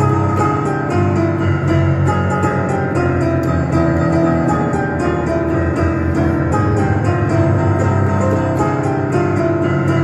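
Digital piano played with both hands in an instrumental passage: quick, evenly repeated chords over sustained low notes, at a steady level.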